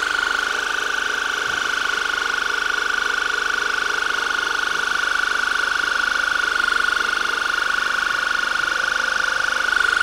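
Electric ear irrigator's pump running steadily while its jet of water flushes the ear canal to loosen impacted earwax. The pump gives a high-pitched hum with a fast pulse in it.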